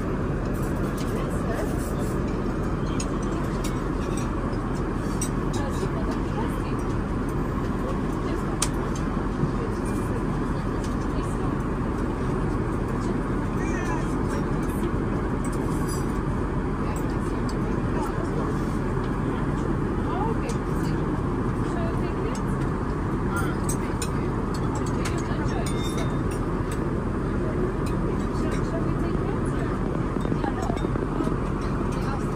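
Steady cabin noise of an Airbus A380 in flight, an even rumble and hiss of engines and airflow, with faint voices in the cabin and a couple of light clicks about nine seconds in.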